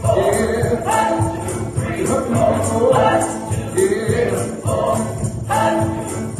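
A small group of voices singing a gospel song together through microphones, over a band accompaniment with a steady beat and jingling percussion.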